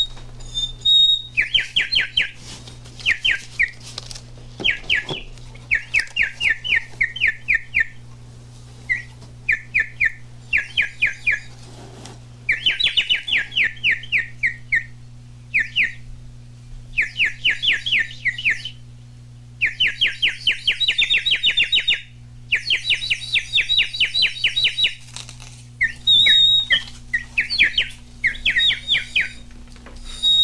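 A bird whistle blown in phrases of rapid warbling trills, about six or seven chirps a second, broken by short pauses, with a few brief steady high whistled notes. It is played to imitate birdsong.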